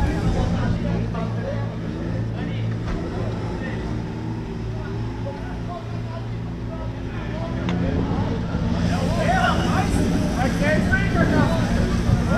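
A car engine idling steadily, with people talking around it, the voices louder near the end.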